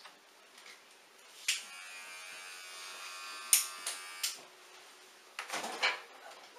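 Electric hair clippers switched on with a click about a second and a half in and buzzing steadily for about three seconds. A sharp click comes partway through, and the clippers are then switched off. A short handling rustle follows near the end.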